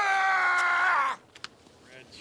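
A person's long drawn-out shout, held at one pitch for about a second and sagging slightly before it breaks off, followed by faint scattered clicks.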